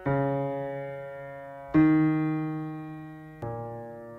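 Song intro on a keyboard: three slow chords, each struck and left to ring and fade, about one every 1.7 seconds.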